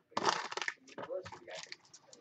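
Foil wrapper of a Bowman Draft baseball card pack crinkling as it is torn open and peeled back by hand: a burst of rustling near the start, then lighter crackles.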